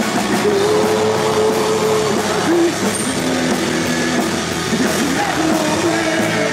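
Punk rock band playing live and loud: distorted electric guitar, bass guitar and drum kit.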